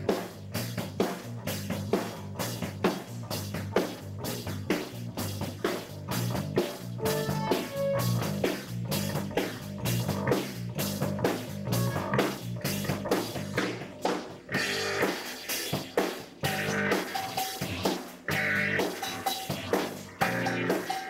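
Amateur garage rock band playing an instrumental breakdown with no singing: drum kit keeping a steady beat under a repeating bass guitar line, with keyboard and guitar.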